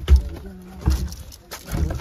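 Three dull low thumps about a second apart, the footsteps and handling knocks of a handheld phone being carried as the person filming walks out onto grass.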